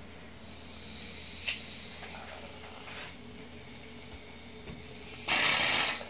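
Aerosol shaving cream can hissing as foam is sprayed out: a faint hiss in the first second or so, then a loud burst of hiss for most of the last second.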